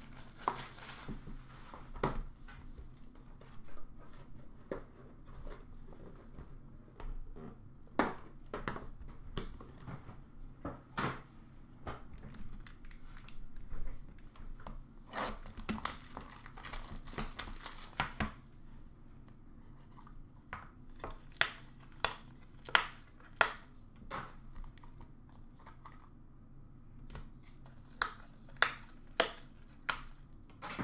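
Hands unwrapping and opening a trading card box: plastic wrapper crinkling and tearing amid handling noise, with a series of sharp clicks about two-thirds of the way in and again near the end.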